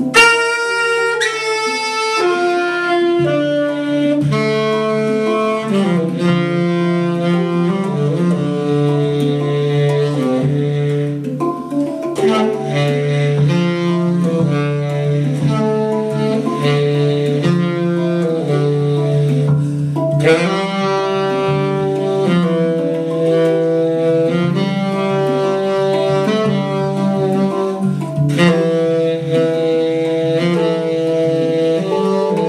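Tenor saxophone improvising a melody of held, changing notes in D minor over the ringing notes of a 9-note hang drum.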